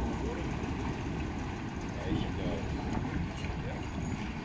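Steady low rumble of wind on the microphone, with faint voices briefly heard about halfway through.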